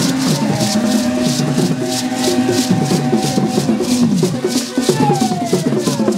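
Music with a beaded gourd shaker keeping a steady beat over held melodic lines that slide down in pitch now and then.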